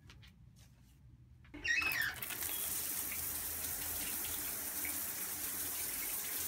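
Handheld shower head turned on: water comes on suddenly about one and a half seconds in and sprays in a steady hiss.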